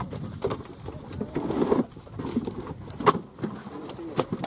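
Freshly harvested catla fish being handled and dropped into plastic fish crates: irregular wet slaps and hard knocks against the plastic, the sharpest about three seconds in.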